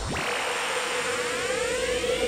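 A rising whine, like a jet spooling up, that climbs steadily in pitch over a steady tone. It is a riser sound effect in the intro soundtrack, building toward the beat drop.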